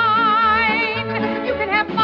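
A woman singing with an orchestra: a held note with wide vibrato for about a second, then shorter moving notes and an upward slide near the end, over sustained orchestral chords.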